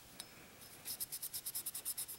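Cotton cleaning patch scrubbed quickly back and forth over a pistol slide, a fast run of short scratchy strokes that starts about a second in.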